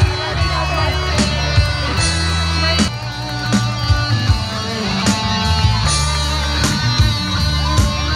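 Live rock band playing, with electric guitars over a moving low bass line and regular sharp beats.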